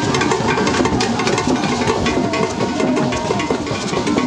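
Ensemble of traditional Ghanaian pegged hand drums played live in a fast, dense, unbroken rhythm.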